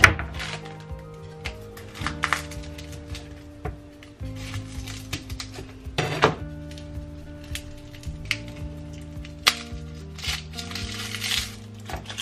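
Knife knocking on a cutting board in several sharp strikes as garlic cloves are crushed and then peeled, over steady background music.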